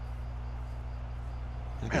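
A steady low hum with nothing else happening, and a man's voice starting right at the end.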